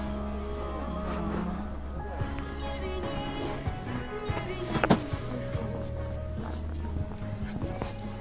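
Background music playing over a shop's sound system, with held notes and a steady low bass line. About five seconds in there is a single sharp knock, the loudest sound here.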